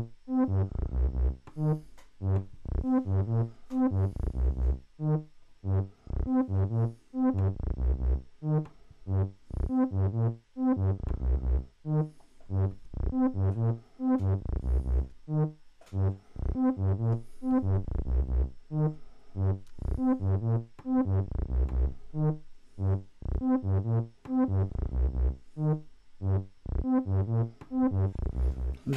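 Eurorack synthesizer patch playing a repeating sequence of short plucked notes, several a second, with a low note recurring, run through the Three Tom Modular Steve's MS-22 filter (a Korg MS-20-style filter) while an LFO modulates it, so the tone keeps shifting.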